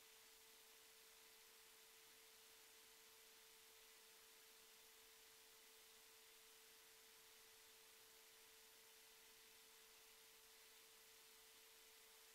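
Near silence: only a faint steady tone and a faint hiss, with no other sound.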